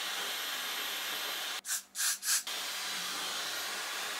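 Hair dryer, a Dyson Supersonic, blowing steadily on a freshly sprayed wig cap to dry the hold spray: an even rushing hiss with a faint high whine. Around the middle it breaks off for under a second, with three short hissing bursts.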